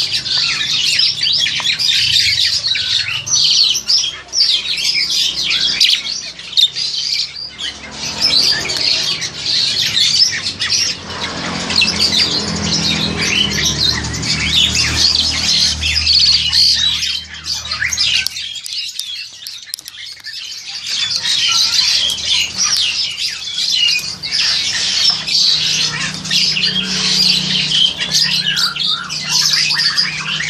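Captive black-collared starlings calling over and over in a near-continuous stream, with a lull of about two seconds around two-thirds of the way through.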